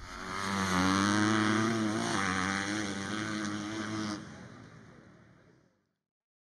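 An engine running at high revs with a slightly wavering pitch. It holds for about four seconds, then fades out.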